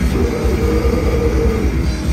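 Grindcore band playing live and loud: heavily distorted electric guitars and bass over fast, continuous drumming, with no break in the wall of sound.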